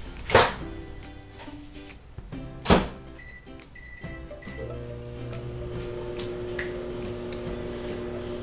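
Background music over a microwave oven being used: two sharp thunks of the door, a few short high beeps from the keypad just after the second, then the oven's steady hum from about halfway as it starts running.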